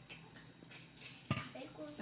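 Electric stir-type popcorn maker running: a faint steady motor hum and the rustle of unpopped kernels being turned in hot oil, with one sharp knock a little past halfway. The kernels are still heating and none have popped yet.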